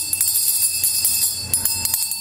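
A small handbell shaken rapidly and continuously, a steady high jingling ring with many quick strikes, rung as the signal that the council session is closed.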